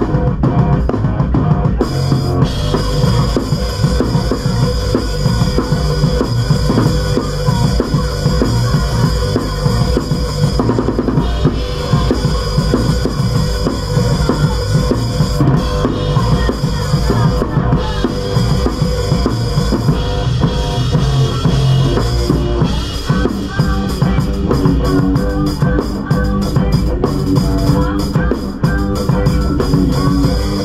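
Live punk rock band playing, heard from right beside the drum kit: kick drum, snare and cymbals loud and close, hit without a break, with the guitar behind them.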